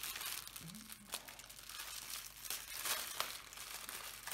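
Plastic packaging crinkling and rustling as it is handled, in uneven bursts of crackle: the small bags of diamond-painting drills being sorted.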